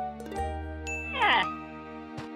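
Cartoon soundtrack: held music notes, with a tinkling chime and a quick falling-pitch sound effect about a second in.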